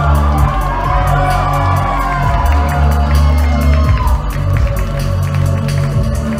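Loud electronic backing track with heavy pulsing bass played through a venue's PA, with the crowd cheering and whooping over it.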